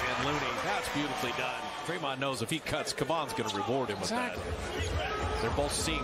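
Broadcast game sound from a basketball arena, played back at low level: a commentator speaking over crowd noise, with a basketball bouncing on the court.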